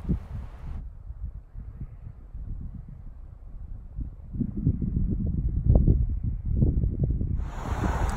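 Wind buffeting the microphone: low, gusty rumbling that grows stronger about halfway through. Just before the end it gives way to a brighter, steadier outdoor street ambience.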